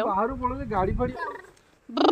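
A person's voice calling out 'gaadi' in a rising and falling, sing-song pitch over a low rumble, then a short loud high-pitched shout right at the end.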